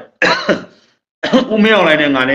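A man's speech in two short phrases with a pause between.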